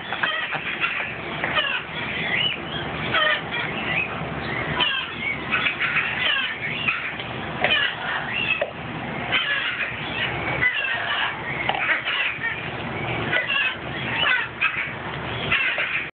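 Hyacinth macaw chattering with its beak in a plastic measuring cup: a steady stream of short, rising and falling squeaky calls, with clicks of the beak against the plastic.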